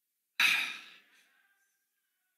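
A man's sigh into a handheld microphone: one short, breathy rush of air about half a second in that fades away within about half a second.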